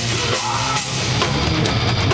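Heavy rock band playing live and loud: distorted electric guitars and bass over a drum kit with a driving bass drum.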